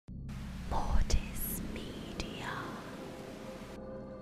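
Glitchy static-noise logo sting: hiss with a deep boom and sharp hits about one and two seconds in, plus sweeping whooshes. The hiss cuts off suddenly near the end, leaving a low droning music bed.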